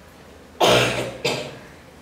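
A man coughs close to the microphone, twice: a longer cough about half a second in, then a short second one right after.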